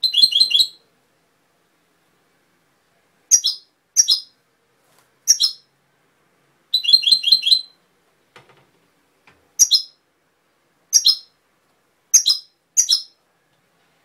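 European goldfinch singing: a rapid trilled phrase at the start and another in the middle, with short single notes scattered between them, each burst separated by silence.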